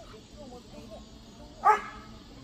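A dog barks once, sharply and loudly, near the end, over faint talk in the background.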